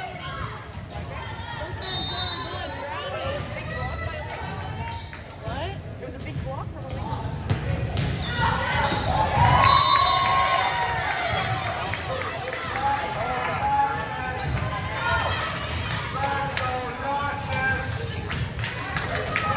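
Indoor volleyball play in a gym with echo: players' shouts and calls, a ball being hit and bouncing on the hardwood, and short high squeaks. The voices grow into louder shouting about halfway through as a rally ends.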